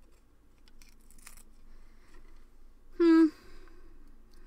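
A few faint small clicks and light handling noises, then a woman's short hummed "mm" about three seconds in, the loudest sound.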